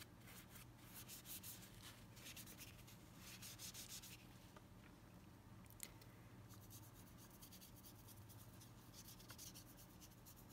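Faint scratchy strokes of a paintbrush dabbing in paint on a plastic palette and brushing along the stick, in short irregular bursts, over a low steady hum. A single small tick about six seconds in.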